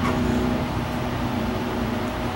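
Steady background hum and hiss in a pause between spoken phrases, with a few faint steady tones and no other events.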